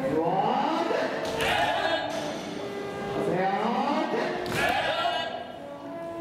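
Many voices shouting together in a large gym, in waves of rising shouts every second or two, the kiai of sports chanbara competitors doing their basic strikes, with a couple of sharp knocks.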